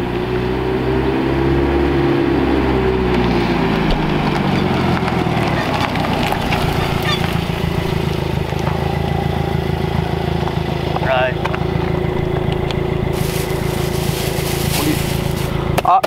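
Subaru WRX's turbocharged flat-four engine as the car drives up and slows, its pitch falling over the first few seconds, then running steadily at low revs with an even exhaust pulse as it creeps up and stops.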